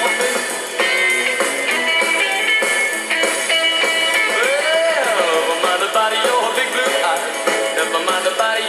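Rock and roll recording in an instrumental stretch without vocals: plucked and strummed guitars, with one note swooping up and back down about halfway through.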